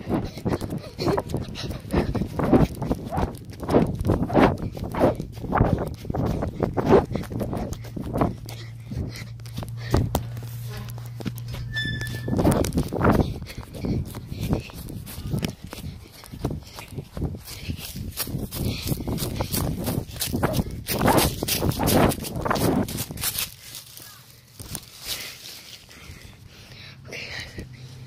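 Handling noise from a phone carried and covered while someone moves: a long run of irregular knocks, rubs and rustles on the microphone, with a low hum for a few seconds in the middle, growing quieter near the end.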